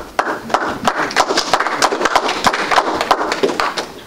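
Applause from a small group of people: many quick, irregular claps that begin just after the start and die away near the end.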